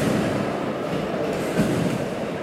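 Competition trampoline being bounced on: the bed lands with a thump and the steel springs rattle, once at the start and again about one and a half seconds in.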